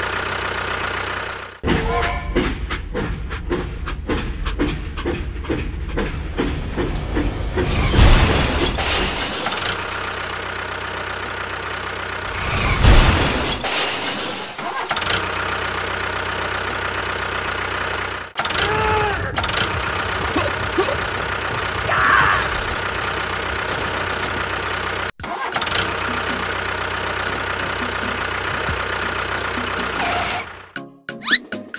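Tractor engine running steadily, broken by several abrupt cuts, with louder swells about a third of the way in and again near the middle.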